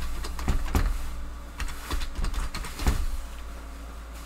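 About a dozen quick, irregular key clicks as the division 0.28 ÷ 0.2105 is typed into a calculator, over a steady low hum.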